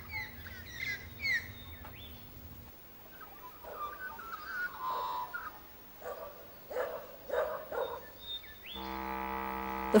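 Birds chirping with quick, repeated calls, then scattered calls in a natural ambience. A sustained musical chord comes in near the end.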